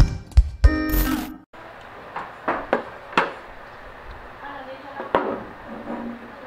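A short intro jingle with sharp percussive hits cuts off about a second and a half in. Then low room noise follows, with a few light clicks and knocks from a plastic-and-metal Hikvision DVR recorder being handled on a wooden table.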